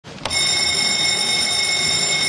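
A bell-like signal starts with a sharp attack and then holds a steady, high, multi-tone ringing for about two seconds before fading. In context it is the chamber's signal bell for the session to reconvene.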